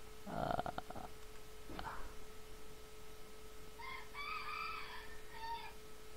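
A rooster crowing faintly, one stepped call of under two seconds in the second half, after a short pitched sound near the start. A faint steady electrical hum runs underneath.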